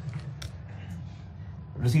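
Marker pen writing on a whiteboard: faint scratchy strokes, with one sharp click about half a second in.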